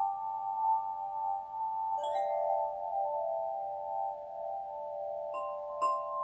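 Metal chime bars struck with a mallet, their tones ringing on and overlapping; one new strike about two seconds in and two more near the end.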